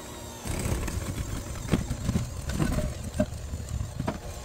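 KitchenAid electric hand mixer running, its beaters churning cream cheese and sugar in a glass bowl. The motor noise gets louder about half a second in, with a few sharp knocks through it.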